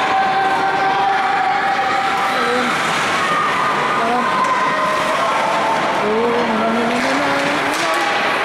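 Ice hockey play: skate blades carving and scraping on the rink ice as players skate and stop, with players' and spectators' voices calling out over the top.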